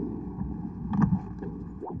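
Steady low rumble and hiss of room noise in a crowded press room, with a sharp click about a second in.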